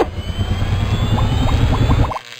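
Logo-ident sound effect: a loud, sudden rumbling whoosh with a faint rising whine above it and a few short, high blips in its second half.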